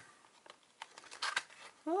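Paper envelope and folded gold paper being handled and opened by hand: a few soft, short paper rustles.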